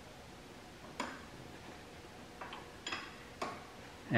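Four sharp metallic clicks with a short ring, from bolts and a hand tool knocking against metal while the bolts that join the engine to the bell housing are being fitted: one about a second in, three close together near the end.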